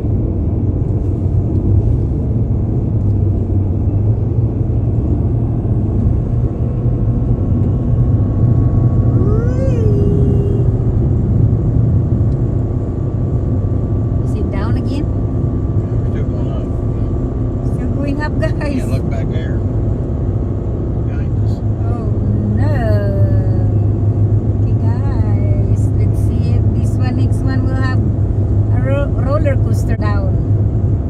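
Steady low rumble of a car's road and engine noise at highway speed, heard inside the cabin, with short bits of voices now and then.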